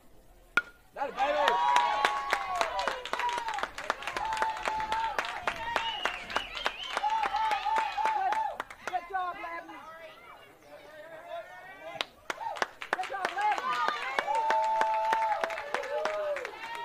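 A bat strikes the baseball with a single sharp ping about half a second in, followed at once by spectators cheering and yelling with clapping. The cheering fades around ten seconds in and swells again near the end.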